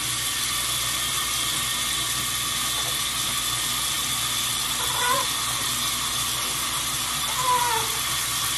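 Tap water running steadily into a sink, an even hiss with no break. Two faint short tones come about five and seven and a half seconds in.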